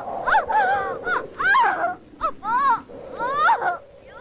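Crows cawing: a quick run of short, harsh caws, several birds calling over one another.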